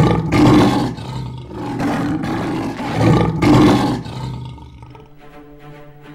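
A big cat roaring in repeated long, rough calls, the loudest at the start and about three and a half seconds in, dying away after about four seconds. Quiet music with held notes comes in near the end.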